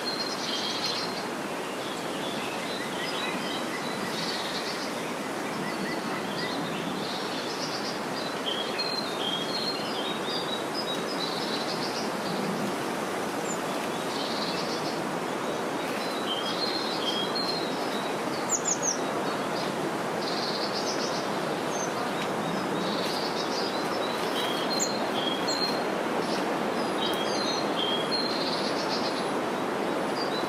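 Countryside ambience: small songbirds chirping and singing in short, repeated phrases throughout, over a steady, even rushing background noise.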